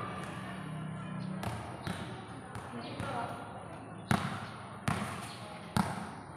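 Basketball being dribbled on a concrete court: a series of sharp bounces at an uneven pace, becoming louder and about one a second in the second half.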